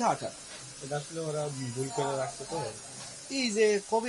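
Men talking, a conversation between several speakers, over a steady faint hiss of background noise.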